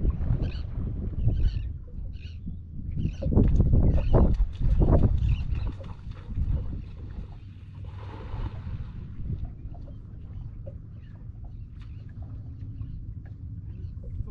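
Low rumble of wind and water lapping against a small boat's hull, heaviest in the first six seconds. About eight seconds in comes a brief distant splash of a cast net landing on the water.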